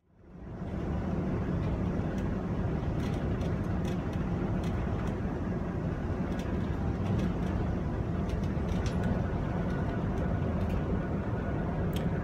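Steady low rumble inside a tour bus, with faint light clicks and rattles on top. It fades in over the first second.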